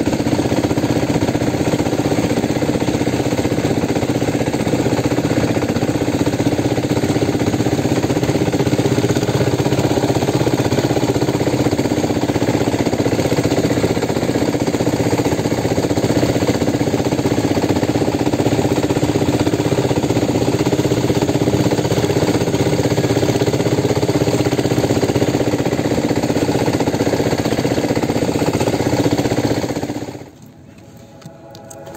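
A jukung outrigger boat's engine running loud and steady while the boat is underway.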